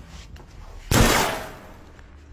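A single sudden loud bang about a second in, dying away over about half a second, over a low rumble.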